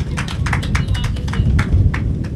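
Audience clapping: many irregular, overlapping hand claps over a low rumble.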